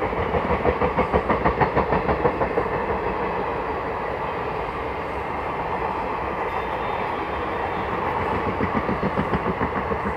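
ICF passenger coaches rolling past close by, their wheels clicking over rail joints in a quick rhythm of about four knocks a second over a steady running rumble. The clicking is loudest in the first two seconds or so and again near the end.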